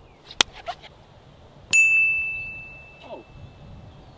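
A sharp click, then about a second later a single bright, bell-like metallic ding that rings on and fades away over about two seconds.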